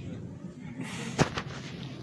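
A single sharp thump about a second in, followed at once by a fainter one.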